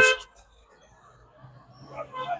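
A man's word ends, then a quiet pause filled with faint street traffic, with a faint low steady hum of a vehicle from about halfway in.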